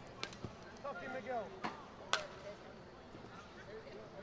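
Soccer ball being kicked during play on artificial turf: a few short, sharp kicks, the loudest about two seconds in, with a distant shout of "go" between them.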